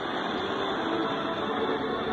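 Portable radio tuned to 828 kHz medium wave, picking up distant stations weakly: a steady hiss of static with faint music under it. Several stations share the frequency and mix together.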